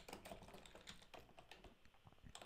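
Faint computer keyboard typing: a run of quick, irregular light key clicks.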